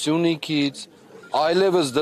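A man speaking Armenian in two emphatic phrases with a short pause in the middle: speech only.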